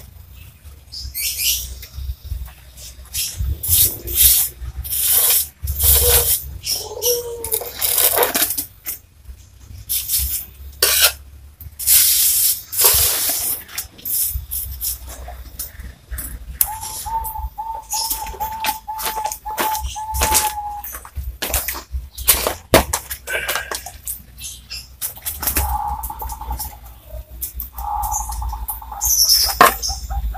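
Repeated irregular scraping strokes of a hand tool worked against a ceramic tile. A bird calls in the background, with a steady pulsed note for a few seconds midway and again near the end.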